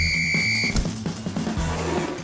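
A referee's whistle held in one steady high blast that cuts off about three-quarters of a second in, over background music.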